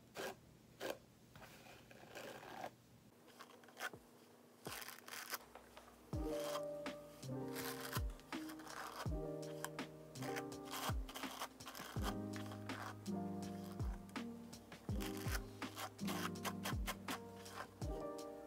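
Paddle hairbrush stroking through long hair close to the microphone, a run of scratchy swishes. About six seconds in, background music with a steady beat and deep bass comes in over the brushing.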